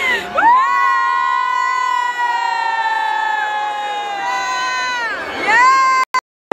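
One long, loud held shout from a voice close to the microphone, sliding up in pitch at the start, holding steady for about four seconds and falling away, then a second shout rising just before the end, with a crowd cheering behind.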